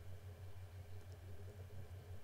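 Faint room tone: a steady low hum with light hiss, and no distinct sound.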